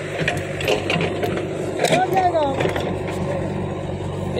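Heavy diesel engine running steadily at idle, with a short human call about two seconds in.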